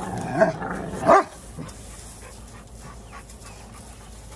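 Rottweilers grumbling at each other in play: a few short pitched grumbles that slide up and down in the first second and a half, the last and loudest a brief bark-like outburst, then quieter.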